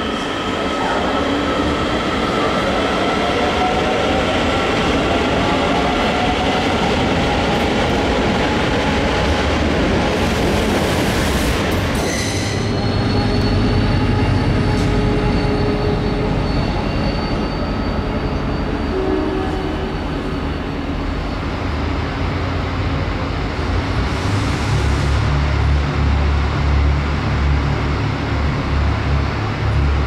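DART electric multiple unit running through a covered station, its wheels squealing in slowly gliding high tones. After a cut, a diesel locomotive's engine gives a steady low hum with a thin high whine, and the hum grows heavier in the last few seconds.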